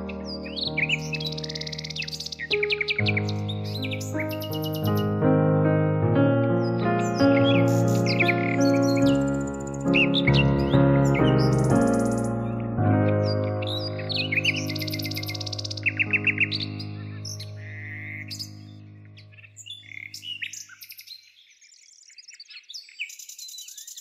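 Slow instrumental background music with birds chirping mixed in. The music fades out about 20 seconds in, leaving a few faint chirps.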